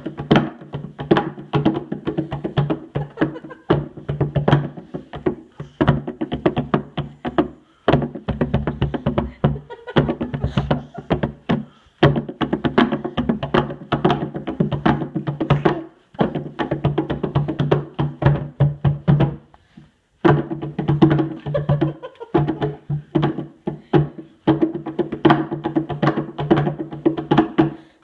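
Hand drum struck rapidly by hand in quick runs of strokes, its low tone ringing under the hits. The drumming breaks off briefly about every four seconds, with the longest pause a little before the last third.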